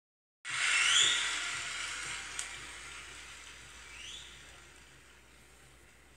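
Vinyl record playing on a Gradiente System One hi-fi through Concert One speakers. A loud hiss starts suddenly and fades away over about five seconds, with a short rising whistle-like tone about a second in and another about four seconds in, and a single click a little before halfway.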